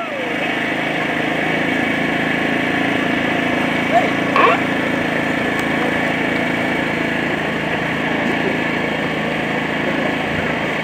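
A steady engine-like drone runs throughout, with a short voice-like sound about four seconds in.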